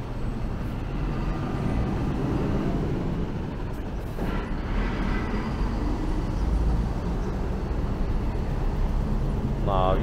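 Street traffic with a box lorry's diesel engine rumbling as it drives past close by, loudest about two-thirds of the way in.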